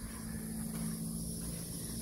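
Outdoor background noise with no clear event: a steady low hum, a steady high hiss and a low rumble of wind or handling on the microphone.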